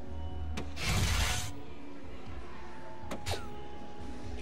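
Two soft-tip darts hit an electronic PERFECT dart machine, about two and a half seconds apart. Each hit is a sharp click. The first is followed by the loudest sound, a burst of noise lasting about half a second; the second by a short falling electronic tone. The machine's music plays steadily underneath.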